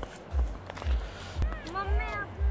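Footsteps in snow, heard as low thuds about two a second, with a voice calling out near the end.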